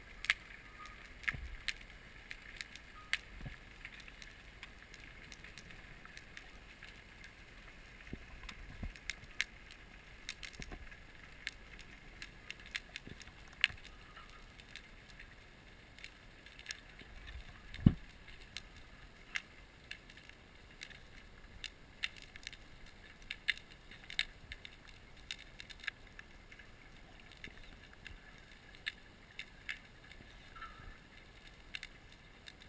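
Underwater sound: a faint steady hiss with scattered sharp clicks and crackles, and one louder knock about eighteen seconds in.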